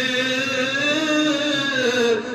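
A man's voice chanting one long held note that rises gently in pitch toward the middle and falls away near the end.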